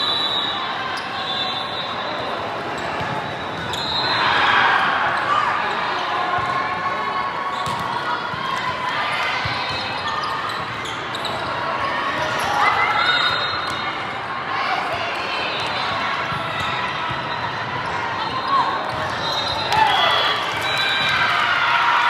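Volleyball rally in a large, echoing hall: sharp slaps of hands and arms on the ball over a steady hubbub of many voices, with players shouting near the end as the point ends.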